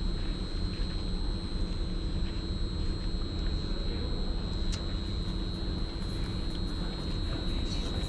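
Steady low rumble and hum of railway platform background noise, with a constant thin high-pitched whine over it.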